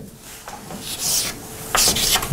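Chalk scratching on a blackboard as symbols are written: a couple of short scraping strokes, one about half a second in and another just before the end.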